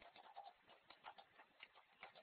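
Faint computer keyboard typing: irregular key clicks, a few a second, picked up through a narrowband headset microphone.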